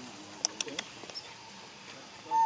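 Faint animal squeaks with a quick run of short, sharp high clicks or chirps about half a second in.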